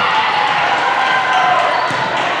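Indoor volleyball gym din: many players' voices calling and cheering over one another after a rally, with ball bounces and thuds on the court floor and a sharp smack near the end.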